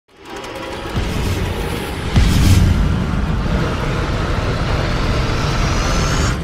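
Cinematic intro music that swells in from silence, with two low, heavy hits about one and two seconds in.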